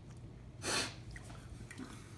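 A single short, sharp burst of breath from one of the people eating, about half a second in, over a steady low room hum.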